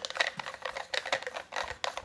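Quick, irregular clicks and light knocks from the parts of an OE Lido OG hand coffee grinder as it is turned and handled during disassembly.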